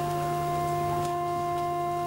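Background film music: a held, steady chord of sustained tones with no beat.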